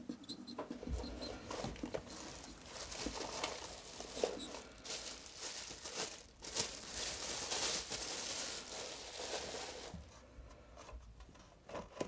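Clear plastic sheet crinkling and rustling as it is handled by hand, in irregular bursts that are busiest a little past the middle.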